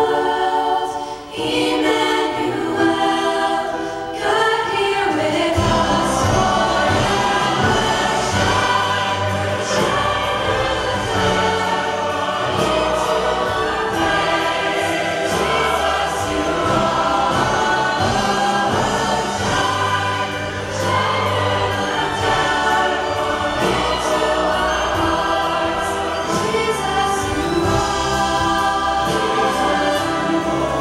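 Large choir and girls' ensemble singing with orchestral accompaniment. After a brief dip about a second in, low bass notes join about five seconds in and the full ensemble carries on.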